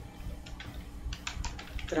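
Computer keyboard typing: an irregular run of keystroke clicks as a word is typed.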